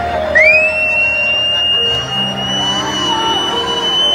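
A single long, high whistle that slides up near the start and is then held steady, over held notes from the mariachi band and crowd noise in a concert hall.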